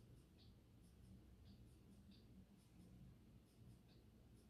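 Near silence: room tone with faint, irregular soft ticks.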